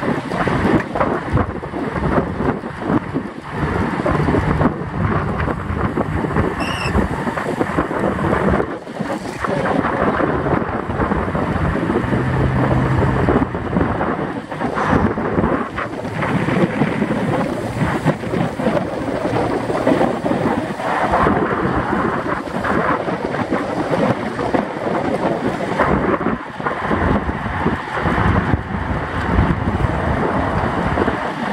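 Wind buffeting the microphone of a bike-mounted camera on a road bike riding at about 26–29 mph, a loud, steady rushing noise that flutters unevenly.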